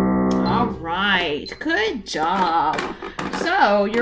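Piano notes at the end of a C major scale played two octaves with both hands, held and fading out within the first second, then a woman talking.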